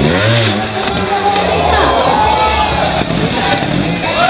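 Trials motorcycle engine blipped hard in quick revs as the bike is lifted up onto a tall wooden box, with a rise and fall in pitch right at the start.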